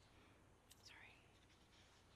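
Near silence: quiet room tone in a pause between spoken Bible readings, with a faint brief sound about a second in.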